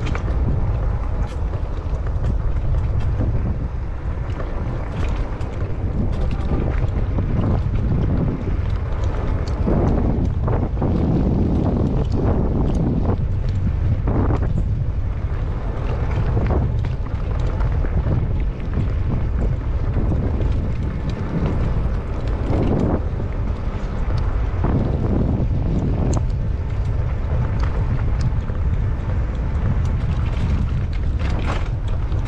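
Wind buffeting the microphone of a camera riding on a Cyrusher XF900 e-bike along a dirt trail, a steady low rumble, with scattered light clicks and rattles from the bike over the bumps.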